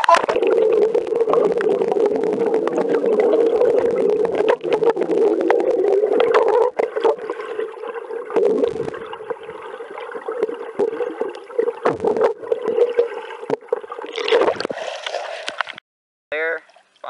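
Muffled gurgling and rushing of water with the microphone in or under the creek water, loud for the first several seconds, then quieter gurgles and small clicks, with a brief louder rush of water near the end.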